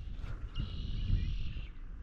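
A faint high-pitched animal call or buzz that starts about half a second in and lasts about a second, over a low outdoor rumble.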